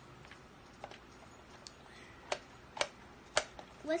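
Small sharp clicks of hard plastic: a faint one, then three clear ones about half a second apart, from a small plastic toy bottle handled in a child's hands.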